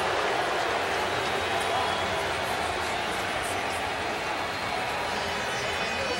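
Steady crowd noise in a packed football stadium: an even din of many voices with no single voice standing out.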